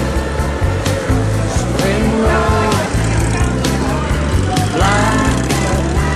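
Background music with a steady beat and a bass line, with a sliding melodic phrase about two seconds in and another about five seconds in.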